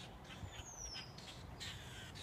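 Faint calls of red-winged blackbirds by a pond: short chips and a thin falling whistle about half a second in.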